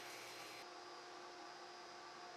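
Near silence: faint steady hiss and electrical hum of room tone, the hiss thinning a little under a second in.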